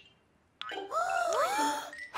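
Cartoon sound effect: after a moment of silence, a click and then a few smooth whistle-like tones gliding up and down as the dice flies away.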